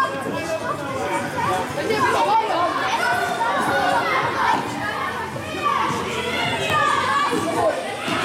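Many children's voices shouting and calling over one another during an indoor handball game, echoing in a large sports hall.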